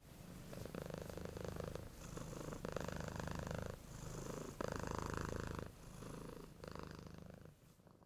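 Domestic cat purring, in about seven swelling phases of roughly a second each as it breathes in and out. It stops just before the end.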